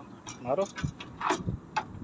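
A man's voice calling out a short word, with several short, sharp clicks and knocks from work on the truck.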